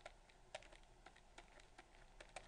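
Faint, irregular clicks and taps of a stylus on a pen tablet while writing, several in two seconds, over near-silent room tone.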